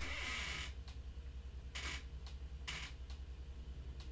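A quiet pause in which a steady low hum runs throughout, with a few faint, brief hisses near the start and around the middle.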